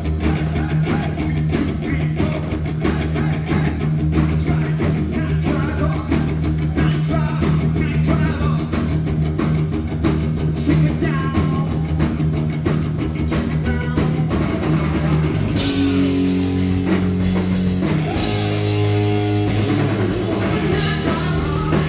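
Live classic rock band playing, picked up by a phone's microphone: distorted electric guitars, bass, drum kit and a lead vocal. Near the end the regular drum beat gives way to a wash of cymbals over held chords.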